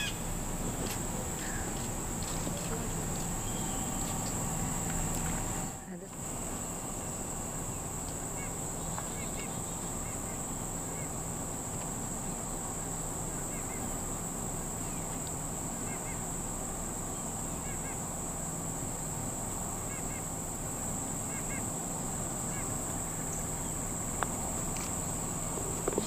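Steady, high-pitched drone of insects singing in the trees, over quiet outdoor background noise. The sound briefly drops out about six seconds in.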